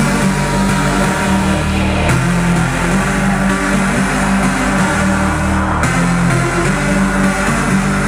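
Loud electronic dance music from a live DJ set over a PA system, with a heavy bass line that shifts pitch about every two seconds.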